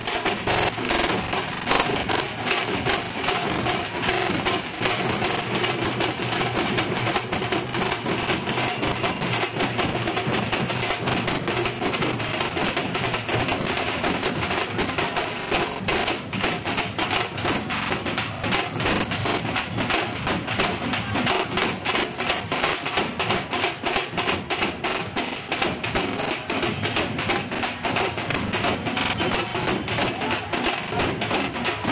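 Fast, steady drumming with a continuous noisy din beneath it.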